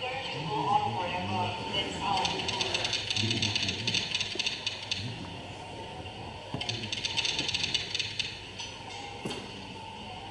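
A short video's soundtrack played over an auditorium's speakers: background music with a quick, ticking high percussion pattern in two stretches, under snatches of voices.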